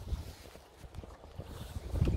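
Wind rumbling on the microphone, with the faint thudding of galloping horses' hooves on sand, which grows louder toward the end as they come closer.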